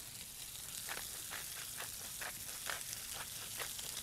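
Sliced zucchini sizzling steadily in bacon drippings in a frying pan. From about a second in, a wooden pepper mill is ground over it in short crunches about twice a second.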